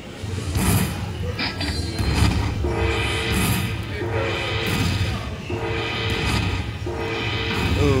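Aristocrat Panda Magic / Dragon Cash slot machine playing its win tally music while the bonus payout counts up on the meter. A short tune repeats about every second and a half over a low rumble.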